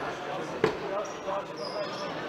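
A single sharp smack of a futsal ball being struck, about two-thirds of a second in, with a short echo, over the talk of players and spectators.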